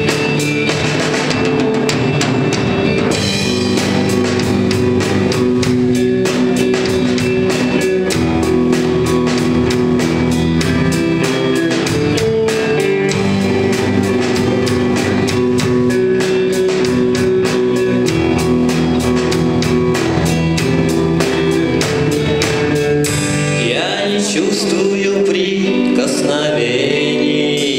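Live rock band playing: drum kit with rapid, even cymbal strokes under electric guitars and keyboard chords. Near the end the drums and low notes drop out, leaving lighter sustained tones.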